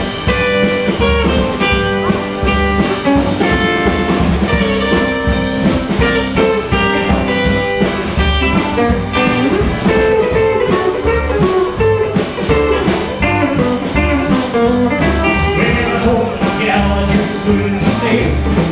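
Live rockabilly band playing an instrumental stretch: a fast electric guitar lead over a strummed acoustic guitar and a walking upright bass, with a steady beat.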